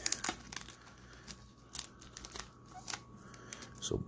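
Rigid plastic card top loader and the trading cards inside it being handled: scattered light clicks and rustles of plastic and card.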